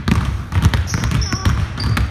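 Two basketballs being dribbled hard and fast on a hardwood gym floor, a quick, uneven run of overlapping bounces.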